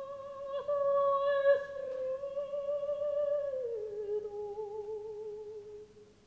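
A solo operatic soprano voice, almost unaccompanied, sings a long held note with vibrato. A little past halfway it slides down to a lower held note, which then breaks off.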